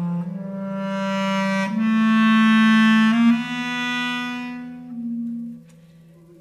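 Bass clarinet playing long sustained low notes that step upward twice and swell in loudness, with a steady lower tone held beneath them; the sound fades out about a second before the end.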